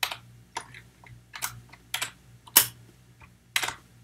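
Computer keyboard keys being typed at an uneven pace, about a dozen sharp clicks, one louder than the rest about two and a half seconds in.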